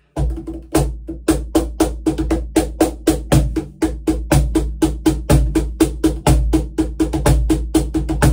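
Pearl Music Genre Primero cajon played by hand in a fast, steady run of strikes near the top of its meranti face plate, about four to five hits a second. Each hit carries a low boom and the crisp buzz of the fixed snare wires behind the plate.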